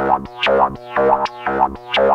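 Korg MS-20 analogue synthesizer playing a self-running, envelope-modulated loop of about four notes a second. Each note has a snappy resonant filter sweep that falls in pitch.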